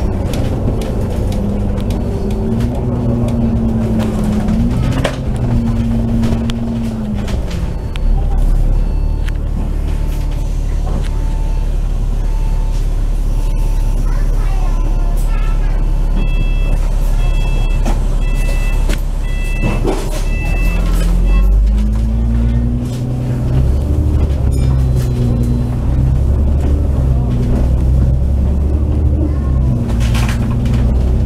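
Double-decker bus's diesel engine and automatic gearbox heard from on board. The engine note climbs and steps up through the gears as the bus pulls away, settles into a heavy steady low rumble for a long stretch, then climbs through the gears again near the end. A run of short beeping tones sounds about halfway through.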